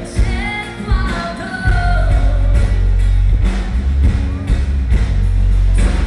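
Live pop band with a female lead vocal over heavy bass and drums; the sung line is clearest in the first couple of seconds.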